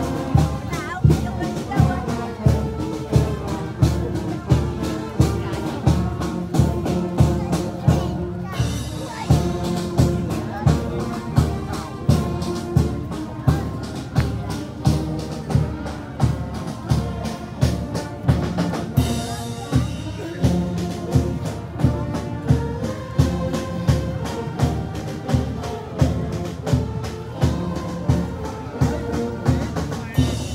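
Marching brass band playing: sousaphones, saxophones and trumpets over a steady bass-drum beat.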